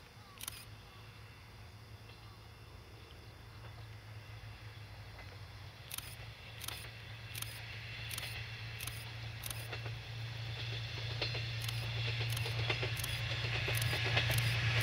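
Two-car KiHa 38 and KiHa 37 diesel railcar train approaching: a steady low engine drone that grows louder throughout as it nears. From about six seconds in, sharp clicks come in short runs about two-thirds of a second apart.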